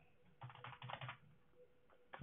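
Faint computer keyboard typing: a quick run of key clicks in two short bursts, about half a second in, lasting well under a second.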